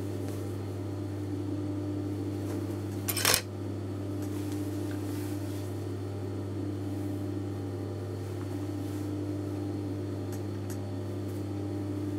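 A steady low electrical hum throughout, with one short, sharp clatter of a hard object about three seconds in.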